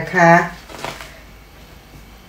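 A thin spring roll wrapper is peeled off a stack of wrappers, giving a brief soft papery rustle just under a second in.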